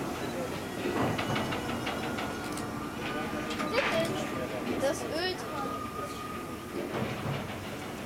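Bystanders' voices, among them a child's high voice, over the steady background noise of a BR 52 steam locomotive on a turntable, with faint steam hiss. A faint steady tone comes in about three seconds in and stops near the seventh second.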